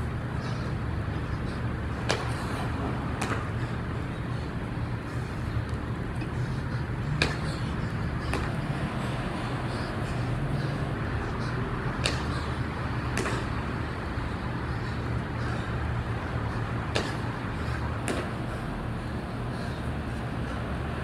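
Burpees on a concrete floor: hands and feet striking the concrete in pairs of sharp slaps about a second apart, one pair every five seconds or so, over a steady low hum.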